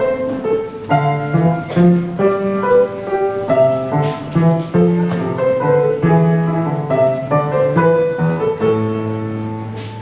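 Upright piano played live: a melody in the upper notes over lower bass notes, keys struck in a steady rhythm.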